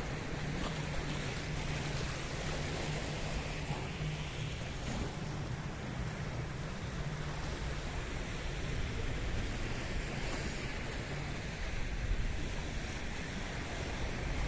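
Sea waves washing against a rocky shoreline, a steady wash of noise with wind on the microphone and a low steady hum underneath.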